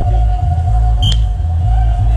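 Background music with a heavy, steady bass beat and a sustained held tone.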